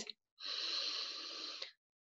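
A woman taking one deep, audible breath in through her mouth, lasting a little over a second, in preparation to sing.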